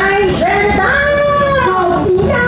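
A woman singing into a microphone, holding long notes that slide slowly up and down in pitch.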